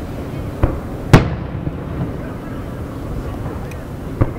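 Aerial firework shells bursting: a sharp report about half a second in, then a much louder one just after a second, followed by a few faint pops.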